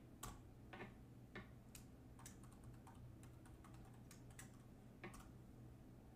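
Computer keyboard typing: faint, irregularly spaced keystrokes as a password is entered, over a faint steady low hum.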